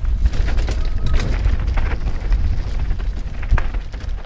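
Wind buffeting a GoPro's microphone as a mountain bike descends a dry dirt trail, a heavy rumble with tyre noise underneath, broken by sharp clicks and clatter from the bike over bumps.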